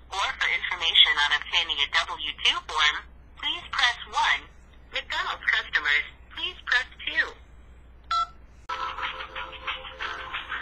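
A voice coming over a phone line, as on an automated complaint-line menu, then a single keypad tone about eight seconds in. Hold music starts just before the end.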